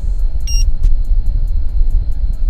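Hot air from a car's dashboard vent blowing onto the microphone held right in front of it, giving a loud, rough low rumble. A short high electronic beep sounds about half a second in.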